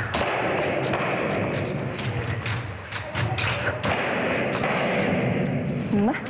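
Taekwondo kicks striking a handheld kicking paddle, several dull thuds in a row.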